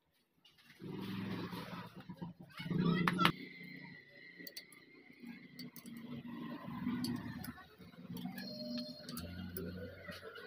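Ring spanner working the tappet adjuster lock nuts on a Honda Activa scooter engine's cylinder head: metal clicks and clinks, the sharpest a couple of quick ones about three seconds in, over a low, muffled murmur.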